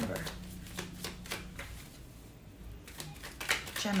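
A tarot deck being shuffled by hand: a run of quick papery card rustles, a short lull a little past the middle, then more rustles.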